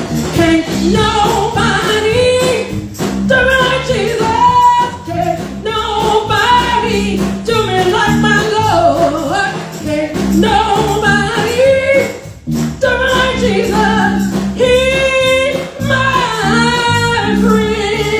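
A woman singing a gospel solo through a microphone, accompanied by a live church band, with sustained low notes underneath her voice.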